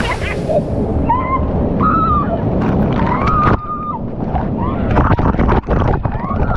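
Water from a rock waterfall in a pool pouring and splashing onto the camera, a dense muffled rush. A few high, gliding voices call out over it.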